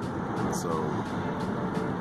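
Steady road and engine noise inside a moving car's cabin, an even rumble with a low hum.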